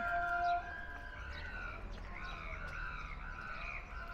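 Street ambience with a short held tone at the start, then a run of short, arching bird calls, about three a second.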